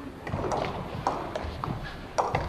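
Light, irregular taps of a table tennis ball bouncing, mixed with footsteps on the hall floor, with faint voices in the background.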